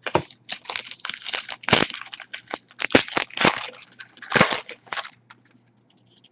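Foil wrapper of a trading-card pack being torn open and crinkled, a dense run of sharp crackles that stops about five seconds in.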